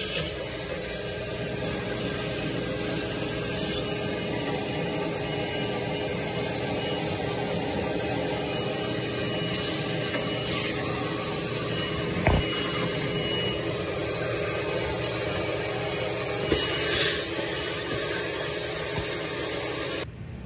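Shop vac running steadily, its hose sucking up the standing water left around the washer's drain-pump filter housing. A single sharp knock comes about twelve seconds in.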